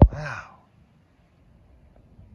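A man's sigh: a short breath out with a falling pitch, lasting about half a second, opening with a sharp click.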